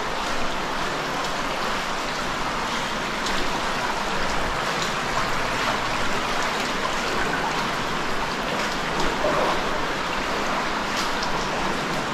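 Underground cave river rushing as a steady noise of flowing water, with a few brief sharper splashes on top.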